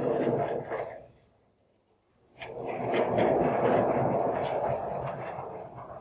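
Large vertically sliding chalkboard panels rumbling along their tracks as they are pushed: one movement ending about a second in, then after a short pause a longer run that slowly fades out near the end.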